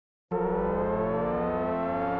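Opening of a children's disco-pop song: after a moment of silence, sustained electronic synthesizer tones come in, some held level and some gliding slowly upward in pitch.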